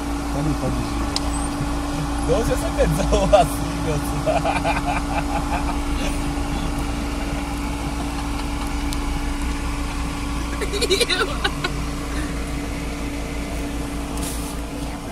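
Steady low hum of an idling vehicle engine, with a man's voice calling out briefly a few times: about two and a half, four and a half and eleven seconds in.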